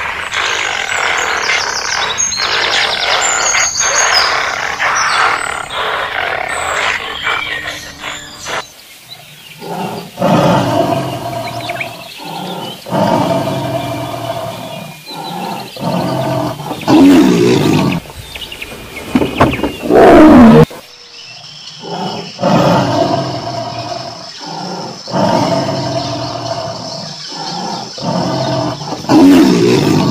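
Tiger growling and roaring in a string of short bouts with brief gaps between them. A different, denser animal calling fills the first nine seconds or so.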